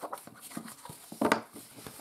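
Cardstock sheets slid and lifted across a tabletop: paper rustling and scraping, with one louder swish a little past the middle.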